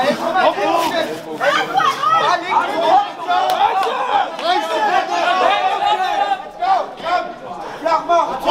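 Crowd of spectators talking and calling out over one another, many voices overlapping with no single clear speaker.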